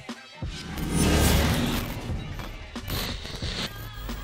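Outro music for an animated logo: a swelling whoosh and low impact hit about a second in, fading into a steady beat.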